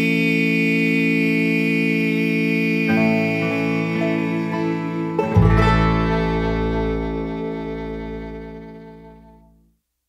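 Closing chord of an acoustic bluegrass string band tune ringing out on guitar and other plucked strings. A deep low note joins a little past halfway, and the whole chord fades steadily away to silence just before the end.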